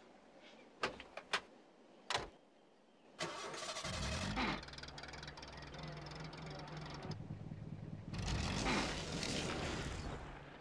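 Small van: a few clicks and a thud as the door is worked and shut, then the engine cranks and starts about three seconds in, runs steadily, and gets louder near the end as the van pulls away.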